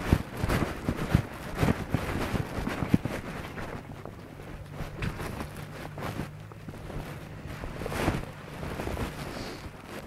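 Wind buffeting the microphone, with a horse's hoofbeats thudding irregularly over the first few seconds as it moves on the lunge line. A low steady hum comes in near the middle and dies away a few seconds later.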